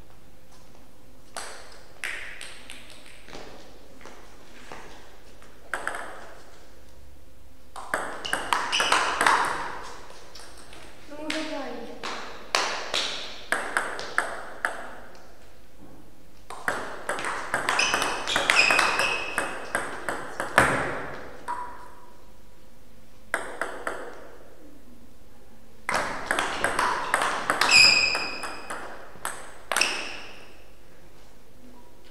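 Table tennis rallies: the celluloid-type ball clicks off paddles and table in quick strings of hits, four rallies with short pauses between them. A player gives a brief shout between points, about 11 seconds in.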